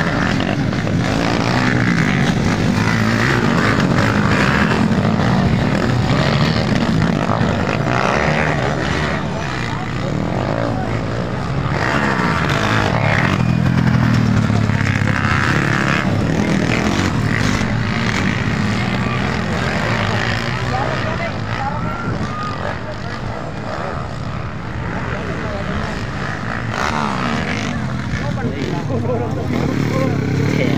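Underbone motorcycles racing on a dirt motocross track, their engines running and revving continuously and swelling and easing as the bikes pass, with spectators' voices over them.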